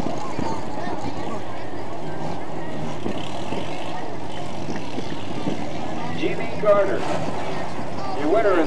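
Pro stock race car engine running steadily under a murmur of crowd voices, with a louder moment near the end as the car moves off.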